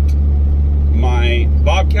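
Steady low drone of a 2001 Dodge Ram's Cummins diesel heard from inside the cab, the truck hitched to a loaded trailer of about 15,000 pounds. A man's voice comes in over it about halfway through.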